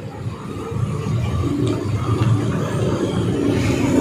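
Street traffic passing close: car engines and a motor scooter running by, the rumble growing louder about a second in and then holding steady.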